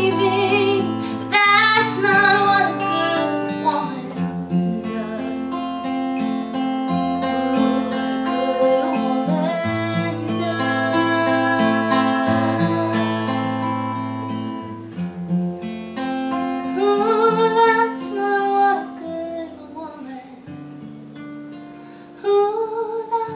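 Acoustic guitar played with a woman singing, as a live duo. Her voice comes in over the guitar early on and again in the second half, and the guitar carries the middle stretch largely alone before the music softens near the end.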